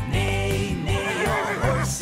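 Children's song backing music with a steady bass line, and a horse whinny sound effect, a wavering neigh lasting under a second, about a second in.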